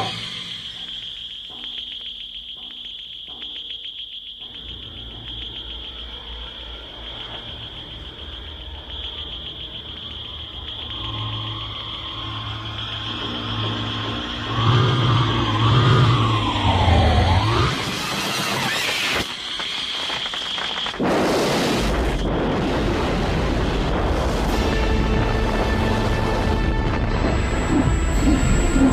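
Sci-fi soundtrack of a Martian war machine attack: a steady high electronic whine with dramatic music, then wavering electronic glides. Sudden loud blasts come about 18 and 21 seconds in, followed by continuous explosion noise.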